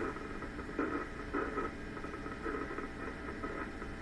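Small amplifier speaker on a Backyard Brains SpikerBox giving a steady crackle, the "popcorn sound" of amplified nerve impulses from a severed cockroach leg while a probe touches the leg.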